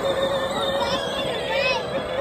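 Electric motor of a child's John Deere Gator ride-on toy running with a steady whine as it drives across grass, with a child's high voice squealing about a second in.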